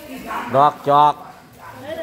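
A man's voice saying two short, loud syllables over low market background noise.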